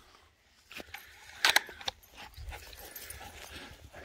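Dog scratching and shuffling on dry grass and dirt while digging, with a few short scratchy sounds about one and a half seconds in, then a faint low rumble.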